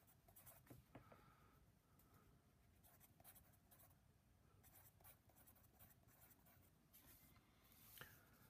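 Faint scratching of a wooden pencil writing on a paper worksheet, in short strokes with small pauses between them.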